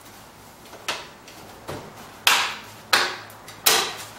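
Hard plastic knocks and clicks, five in all and spaced roughly half a second to a second apart, the last three loudest, as the plastic housing of a seawater fuel-cell battery is handled and fitted together.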